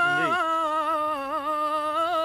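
A man singing Punjabi Sufi kalam unaccompanied, holding one long note on a vowel with small wavering ornamental turns.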